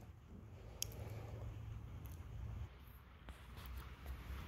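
Faint room tone: a low hum that drops away about two-thirds of the way through, with a single light click about a second in.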